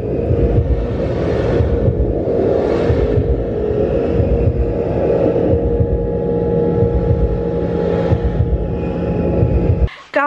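Sound-therapy meditation drone: a loud, deep, steady rumble with sustained ringing tones held over it, a lower tone joining about six seconds in. It cuts off suddenly just before the end.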